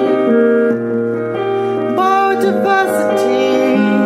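A song's demo track: a melody sung in long held notes over keyboard accompaniment, the chords changing every second or two.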